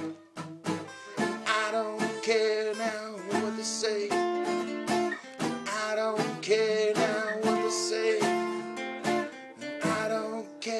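Acoustic guitar strumming chords, about two strums a second, in an instrumental passage of a folk-rock song with no vocals.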